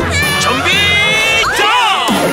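High-pitched cartoon voices shouting and cheering together over an upbeat theme jingle. There is a long held squeal in the middle and sliding whoops near the end.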